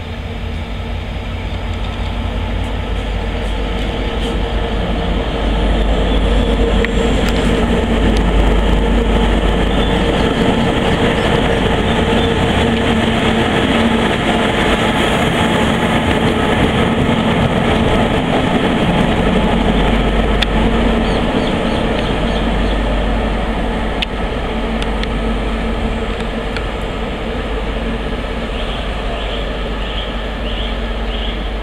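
Metre-gauge diesel freight locomotive approaching and passing close by at low speed, its diesel engine running with a steady drone. It is loudest as the hood goes past, then falls off somewhat as it moves away.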